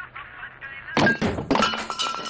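A melody plays, then about a second in comes a loud thud followed by crashing and breaking sounds, as of objects being smashed.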